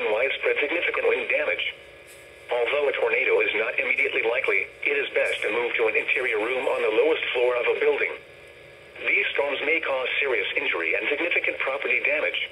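A NOAA Weather Radio broadcast voice reading out a severe thunderstorm warning through a weather alert radio's small speaker, with two short pauses.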